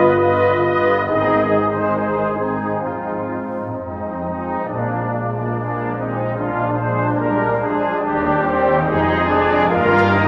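Brass ensemble playing a slow hymn tune in sustained chords, with the bass moving to a new note about halfway through and again near the end.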